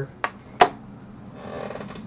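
Plastic battery cover of a clamshell iBook G3 being lifted off its case: two sharp plastic clicks in the first second, the second louder, then a short rustle of the cover being handled.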